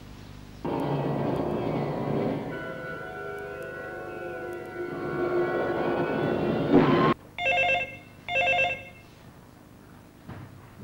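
Film music from a western playing on a television stops suddenly about seven seconds in. Then a telephone rings twice in two short bursts.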